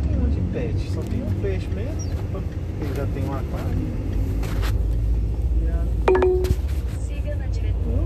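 Low road and engine rumble inside a car's cabin as it drives slowly through a U-turn, with faint voices in the car. A short, steady beep-like tone sounds briefly about six seconds in.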